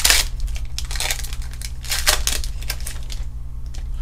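A foil trading-card booster pack torn open and crinkled by hand: a sharp tear right at the start, then a few shorter bursts of rustling foil, with a steady low hum underneath.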